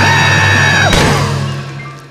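A cartoon character's high shocked shriek, held for about a second over a music bed, ends in a sharp hit and a fading crumbling rustle as the figure collapses into a heap.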